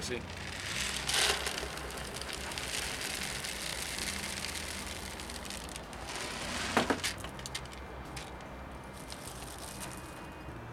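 Akadama, a granular clay bonsai substrate, poured from a plastic bag into a plastic pot: a steady hiss of falling grains with the bag crinkling, stopping with a sharp crackle about seven seconds in.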